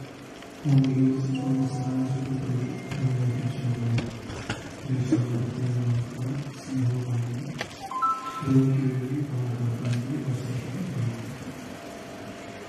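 A priest chanting funeral prayers into a microphone in long, held notes, phrase after phrase with short breaths between. A brief high ringing tone sounds about eight seconds in.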